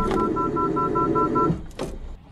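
Honda N-BOX forward-collision warning beeping rapidly in two tones, about five beeps a second, over the rumble of the car braking under automatic emergency braking. Beeping and rumble cut off about one and a half seconds in as the car comes to a stop, followed by a short knock.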